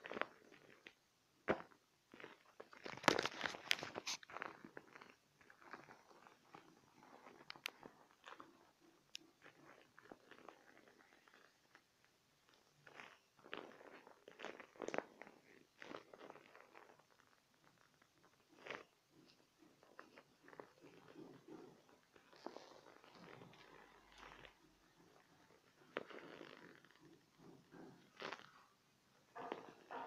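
Close handling noise: irregular crinkling, crackling and rubbing of a vinyl beach ball and fabric pressed near the microphone, with a loud run of crackles about three seconds in.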